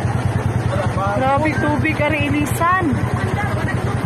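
Flash-flood water rushing, a steady noisy roar under a constant low drone, with people's voices calling out between about one and three seconds in.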